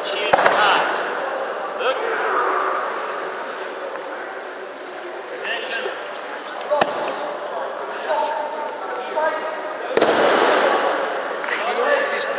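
Steady murmur of many voices in a large hall, with a sharp slap just after the start and another near seven seconds. A louder thud about ten seconds in, as a thrown partner lands on the judo mat.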